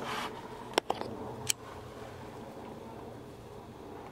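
A few short, light clicks, three close together in the first second and a half, over a faint steady background.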